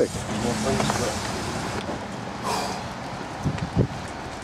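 Steady outdoor background noise with brief low voices, and a few low thumps on the microphone near the end.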